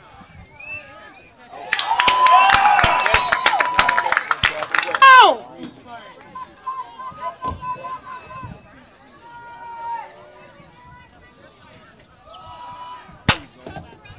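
Football spectators cheering, shouting and clapping for about three seconds, ending in one yell that falls in pitch; then scattered voices, and a single sharp crack near the end.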